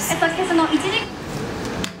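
Speech, likely from the TV news broadcast, in the first second, then a quieter stretch with a single sharp click near the end.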